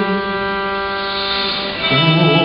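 Kamancha and viola holding a sustained bowed note that fades about a second and a half in; a new, lower note with vibrato comes in near the end.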